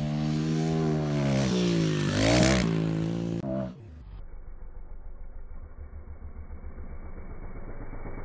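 Pit bike's small single-cylinder engine running at high revs, dipping and climbing again about two seconds in, then dropping to a quieter, low, pulsing idle about four seconds in.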